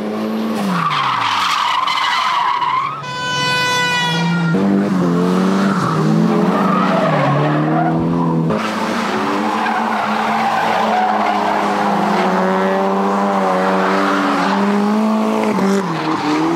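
Cars drifting through corners: engines revving up and falling off, with tyres squealing, the loudest squeal about three seconds in.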